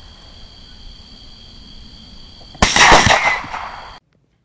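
A single loud gunshot about two and a half seconds in, cutting off a steady high whine and trailing off over about a second.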